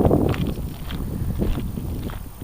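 Wind buffeting the microphone of a small handheld camera, a low rumbling haze that is loudest at the start, with a few soft knocks.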